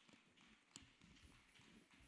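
Near silence: faint room tone with a few soft, irregular knocks and one sharper click about three-quarters of a second in.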